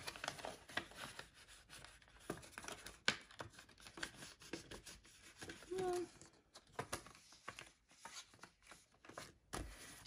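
Faint rustling and crinkling of paper banknotes and clear plastic binder sleeves as bills are handled, slid into a pocket and pages are turned, with many small irregular clicks.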